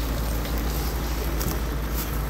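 Wind rumbling on the microphone: a steady low rumble with an even hiss and a few faint clicks.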